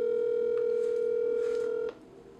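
Telephone ringback tone over a phone's speaker: one steady two-second ring that cuts off cleanly, the sign that the called line is ringing.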